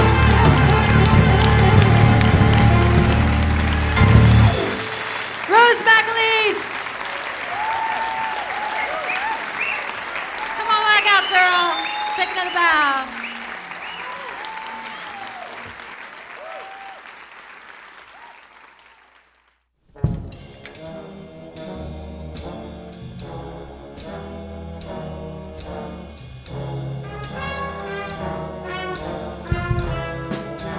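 Music with a heavy bass beat stops about four seconds in. Audience applause with cheers and whoops follows, fading away to a moment of silence, and then a brass band starts playing with a steady beat.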